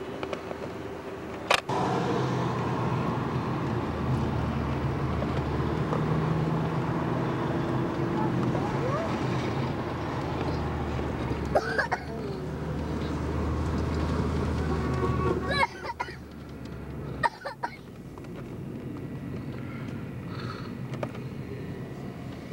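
Road and engine noise heard inside a moving car: a steady low rumble that drops to a quieter hum about sixteen seconds in. A sharp click comes about a second and a half in.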